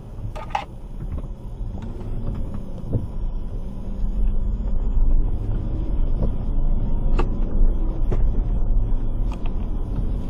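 Low rumble of a car driving on a wet road, heard from inside the cabin: engine and tyre noise, louder from about four seconds in, with a few faint clicks.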